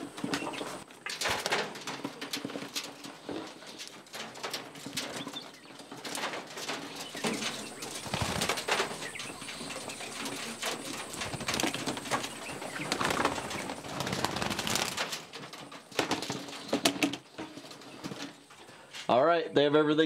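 Young male coturnix quail being handled into a wire cage: scattered clicks and knocks of the cage and carrier, wingbeats, and soft quail calls.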